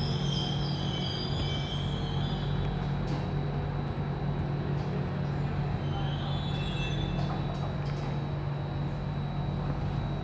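Steady low hum with a faint high whine inside the carriage of an Alstom Metropolis C830 metro train as it runs slowly alongside the platform.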